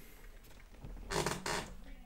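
A short rustle and creak about a second in, from a person shifting and leaning over in a gaming chair. Quiet room tone otherwise.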